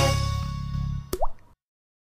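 Show's closing jingle fading out, ending with a sharp click and a short rising liquid 'bloop' sound effect a little after one second in, then the sound stops suddenly.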